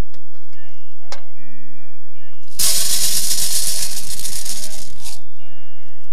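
Studio orchestra music accompanying a stage pantomime, with held notes and a sharp click about a second in. About two and a half seconds in, a loud rattling noise cuts in for about two and a half seconds, then stops abruptly and the music carries on.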